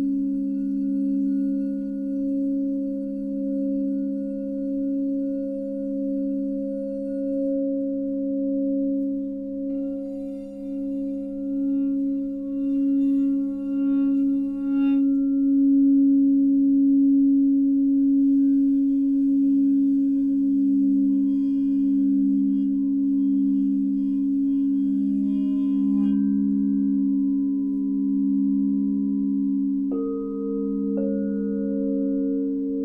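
Alchemy crystal singing bowls tuned to 432 Hz, rubbed with a mallet around their rims, sustaining several overlapping low tones that pulse slowly as they beat against one another. Higher ringing tones join about ten seconds in and again near twenty seconds, each set fading out a few seconds later.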